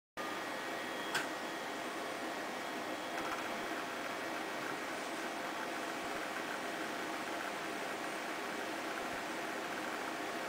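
Low, steady hiss with a few faint thin whining tones in it, as a blank stretch of videotape plays back. There is a single click about a second in.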